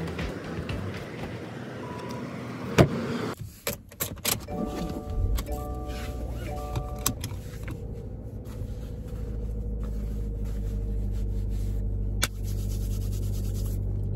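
A car engine starts and then idles steadily, while a dashboard warning chime dings several times in short bursts around the start.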